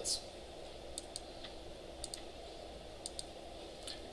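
Computer mouse clicking faintly: three quick double clicks, about one a second.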